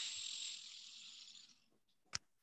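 A faint hiss that fades out over about a second and a half.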